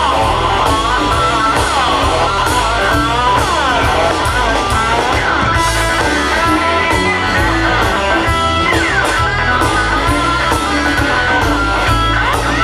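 Live blues band playing loudly: an electric guitar lead with repeated bent, sliding notes over a steady electric bass line and drum hits.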